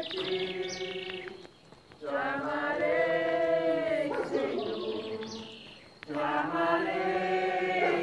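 A group of people singing a slow hymn together, in long held phrases of about two seconds with short pauses between them.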